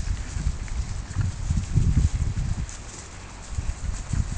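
Holstein dairy cows moving about and grazing close by on pasture: irregular low thuds, loudest a second or two in.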